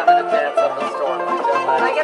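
A live band playing music on plucked string instruments: acoustic guitar with a bright plucked lead over a stepping bass line.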